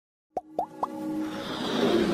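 Logo-intro sound effects: three quick plops, each sliding up in pitch, about a quarter second apart, followed by a rising swell that builds into music.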